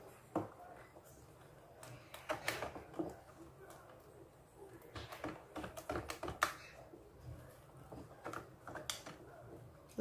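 Faint, irregular clicks and light knocks of kitchen utensils against a plastic bowl as baking powder is added to cake-like batter and stirred in with a wooden spoon, coming in small clusters a few seconds apart.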